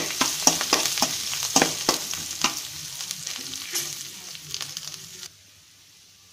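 A tempering of seeds, dried red chillies and curry leaves sizzling in hot oil in an aluminium kadai, with a metal spatula stirring and clicking against the pan. The sizzle fades and then cuts off abruptly about five seconds in.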